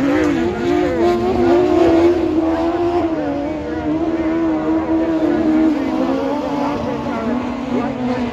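Autograss racing car engines running hard around the track, their note rising and falling as the drivers get on and off the throttle through the bends. The pitch drifts lower near the end.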